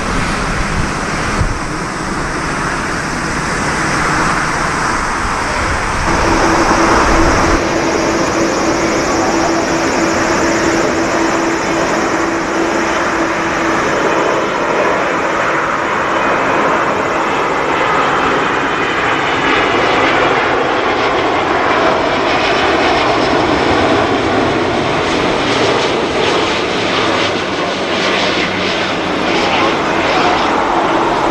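Airbus A350 jet engines (Rolls-Royce Trent XWB turbofans), loud and steady: first an airliner climbing out after takeoff, then, after a change about seven seconds in, a Singapore Airlines A350-900 on final approach with gear down, coming in to land. A steady hum sits under the engine noise for several seconds after the change.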